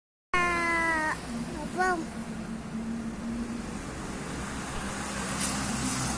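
A train horn sounds one steady note for about a second and drops in pitch as it cuts off. A short higher call follows, then the low steady hum of the train's engine.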